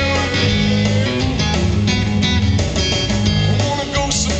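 Live blues-rock trio playing: amplified guitar over bass guitar and drums.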